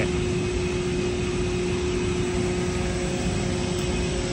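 Steady machinery hum with a constant held tone, from aircraft or ramp equipment running at a 747's cargo door, even and unchanging throughout.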